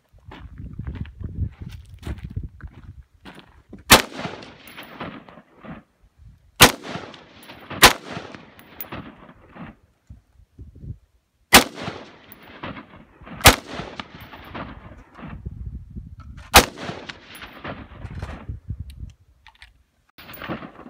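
AR-15-style semi-automatic rifle fired six single shots at uneven intervals of one to four seconds, each crack trailing off in an echo. A low rumble runs between the shots.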